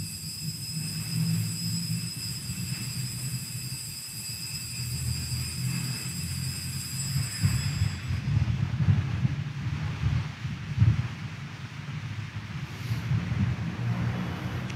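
Low, uneven rumble with a faint, steady high-pitched whine over it; the whine stops about eight seconds in.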